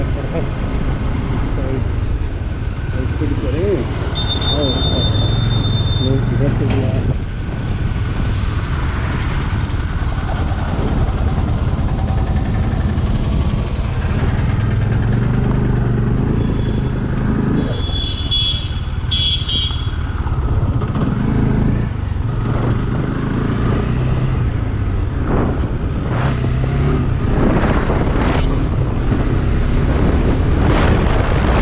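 Yamaha FZ25's single-cylinder engine running steadily as the motorcycle rides along the road. A brief high-pitched tone sounds around four to six seconds in, and again more brokenly around eighteen to twenty seconds in.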